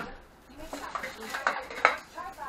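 Empty aluminium beer cans clinking against one another and a plastic garbage bag rustling as a hand pulls a can out of the bag. A run of sharp clinks comes in the second half, the loudest just before the end.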